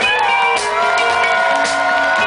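Live band playing amplified music with electric guitars and drums, with long notes held over the beat.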